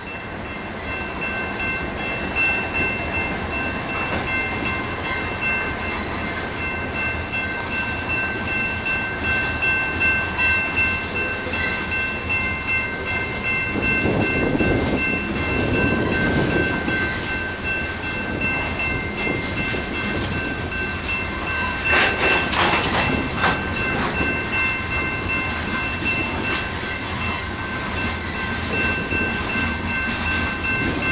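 Freight train of covered hopper cars rolling past: a steady rumble and clatter of steel wheels on the rails, with a steady high-pitched ringing held throughout. The rumble swells about halfway through, and a quick run of sharp knocks comes about two-thirds of the way in.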